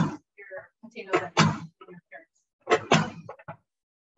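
Kitchen knife chopping vegetables on a cutting board: a few short, sharp knocks, coming in two pairs about a second and a half apart.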